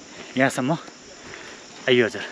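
Steady high-pitched insect chirring from the surrounding woodland, with two short spoken snatches from a man, one about half a second in and one at the very end.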